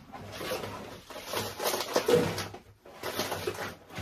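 Kraft-paper tea pouch being handled and rustled, in two spells of crinkling, the second shorter.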